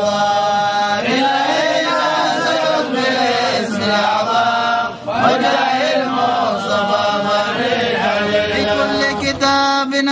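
Men's voices chanting an Arabic Islamic devotional poem, a continuous melodic chant with held, wavering notes and a brief breath pause about halfway through.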